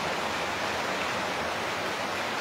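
A steady, even hiss with no change through the pause.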